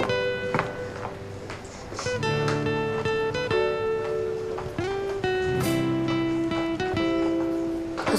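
Background music: acoustic guitar playing single plucked notes.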